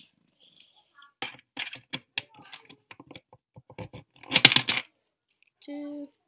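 Coins being pushed into a plastic soccer-ball coin bank and the bank being handled: a run of light clicks and taps, with a louder clatter of coins about four and a half seconds in.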